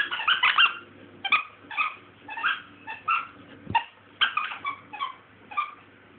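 Old English Sheepdog puppy at play, with a run of about a dozen short high squeaks, roughly two a second, and a dull knock a little past the middle.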